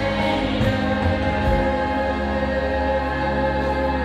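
Live contemporary worship music: women's voices singing with acoustic guitar and full band accompaniment, steady sustained chords underneath.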